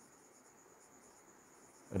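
Faint strokes of a marker writing on a whiteboard, over a steady high-pitched whine in the room.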